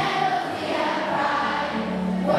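A large group of schoolchildren singing their school song together, in unison, over recorded backing music.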